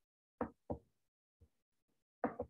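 Computer mouse clicked twice in quick succession, then once faintly about a second later: short, sharp clicks close to the microphone.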